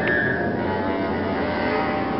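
Free-improvised avant-garde music for clarinet, bass clarinet and inside-piano: a dense bed of sustained, held tones, with a brief high pitch right at the start.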